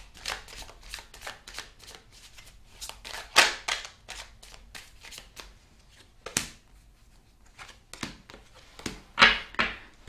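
A deck of tarot cards shuffled by hand: a run of soft flicking and riffling clicks, with a few louder card slaps about three and a half seconds in, about six seconds in, and near the end.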